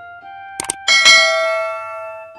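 A sharp double mouse click, then a bright bell ding that rings on and fades, from a subscribe-button animation, over sustained keyboard music notes.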